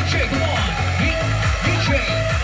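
Electronic dance music played by a DJ over a nightclub sound system, with a steady kick drum and held bass notes.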